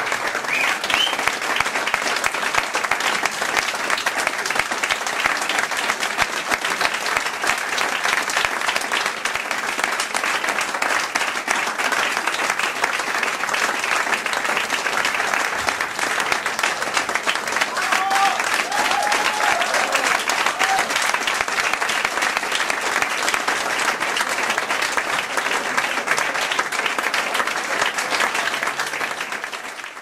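Theatre audience applauding: dense, steady clapping from many hands that fades out at the very end.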